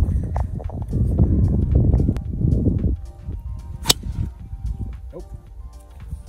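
A golf club striking a ball off the tee: a single sharp crack a little before four seconds in, heard over background music.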